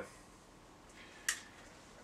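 Quiet small-room background in a pause between words, with one brief soft hiss a little past the middle.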